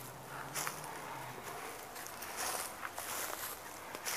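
Irregular footsteps through dry leaf litter and undergrowth, soft and uneven.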